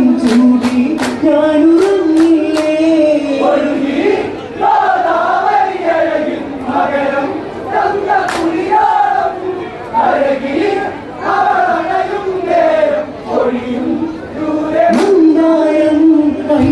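Group of men singing an Onamkali folk song in chorus, with a few sharp hand claps in the first three seconds and single claps around the middle and near the end.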